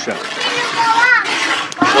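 Children's voices talking and calling, high-pitched, over a steady noisy background.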